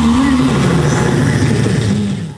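A live band's amplified music breaking off: a single wavering held note in the first half second, then loud, rough low noise through the sound system.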